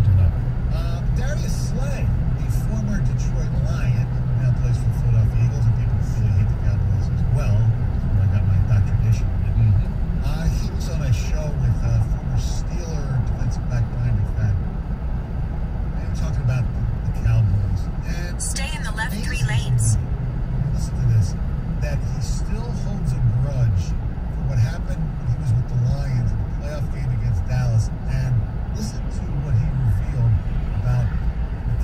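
Car cabin noise while driving at highway speed: a steady low road and engine drone, with a brief hiss about two-thirds of the way through.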